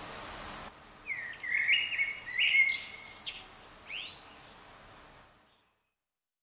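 Birds chirping outdoors: a brief hiss, then a run of short chirps, then one upward-sweeping call near the end, before the sound fades out.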